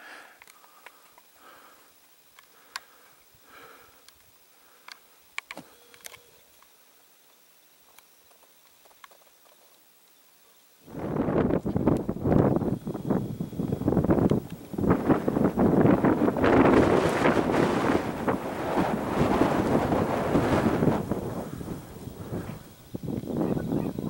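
A few faint ticks in near quiet, then, starting abruptly about eleven seconds in, strong wind on the microphone, rising and falling in gusts across a high, windy summit ridge.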